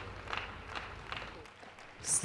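Faint ice-arena crowd noise with a light murmur, fading lower about three-quarters of the way through.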